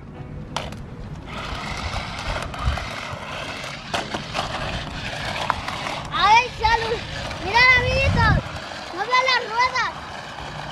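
A small battery-powered remote-control stunt car whirring as it drives and flips over dirt and leaf litter. In the last few seconds a small child's high voice calls out several short rising-and-falling sounds, louder than the car.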